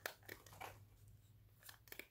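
Near silence, broken by a short click at the start and a few faint ticks and rustles as a small plastic UV curing lamp is handled and set over a rock by gloved hands.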